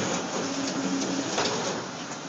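A small machine running: a noisy mechanical whir with a short steady hum partway through, and a sharp click about one and a half seconds in.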